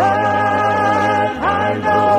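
Southern gospel male quartet singing long held notes in close harmony over accompaniment, moving to a new chord about one and a half seconds in.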